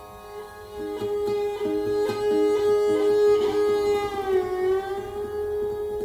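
Viola and oud playing together: the viola holds a long bowed note that bends down and back up about four seconds in, while the oud plucks a run of quick short notes beneath it. The music grows louder about a second in.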